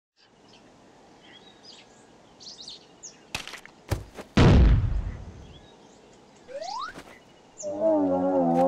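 Cartoon sound effects over a faint birdsong ambience. A few sharp clicks lead into one loud crash about four seconds in, as the stick figure falls apart; it dies away over about a second. A short rising glide comes later, and a wavering electronic tone starts near the end.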